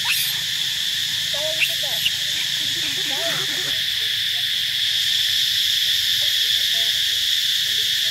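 A steady, shrill insect chorus droning without a break. Faint voices sound underneath in the first half, and two sharp clicks come about a second and a half and two seconds in.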